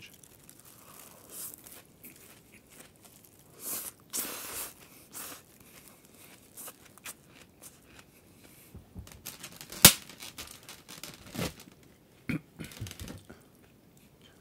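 Clear plastic bag and plastic takeaway container rustling and crinkling in irregular short bursts as food is handled, with one sharp click just under ten seconds in that is the loudest sound.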